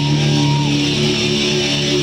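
Live rock band with distorted electric guitars holding steady, sustained chords, and a short gliding note about half a second in.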